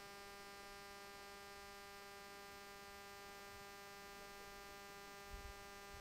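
Near silence with a faint, steady electrical hum in the recording, a stack of even tones that does not change. There is a soft low thump shortly before the end.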